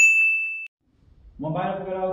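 A single bright ding sound effect, one high ringing tone that fades and cuts off after about two-thirds of a second. A voice starts about a second and a half in.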